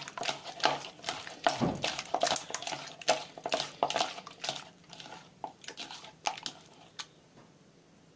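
A bare hand squeezing and mixing raw egg into marinated chicken pieces in a bowl: irregular wet squelches and clicks. They thin out after about five seconds and stop near the end.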